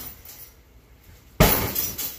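A single kick landing on a hanging heavy punching bag a little past halfway through: one sharp smack, followed by a brief metallic jingle that fades quickly, likely the bag's hanging chain.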